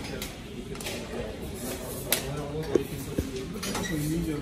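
A few sharp clinks and knocks of glassware and bar items being handled while a drink is mixed, the sharpest about halfway through, over background voices.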